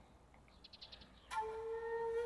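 Music from the drama's score: after a near-quiet moment, a flute-like wind instrument starts one steady held note about two-thirds of the way in.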